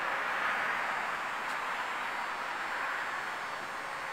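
Steady hiss of outdoor background noise, with no distinct event in it, fading slightly across the four seconds.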